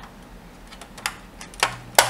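Small plastic clicks and taps from a Bruder Land Rover toy as its hood is lowered and pressed shut: three sharp clicks, the last and loudest as the hood snaps closed.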